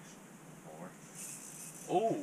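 Quiet ice-fishing shelter with brief low voices, one faint just before a second in and a louder short one at the end, and a short high hiss in between.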